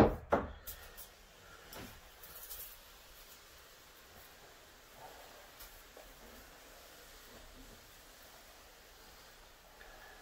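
A few sharp knocks and clatter as a hand-pump pressure sprayer is gripped and handled. After that, only faint handling sounds and soft steps on the loft joists.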